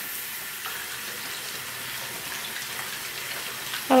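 Bathroom mixer tap running a thin, steady stream into a ceramic washbasin.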